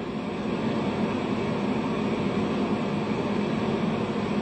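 Steady background noise: a constant hiss with a low hum under it, unchanging throughout.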